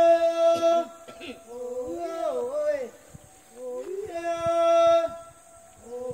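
Korowai chant, sung by voices off-camera: a long held note near the start and again about four seconds in, each followed by a wavering, falling phrase.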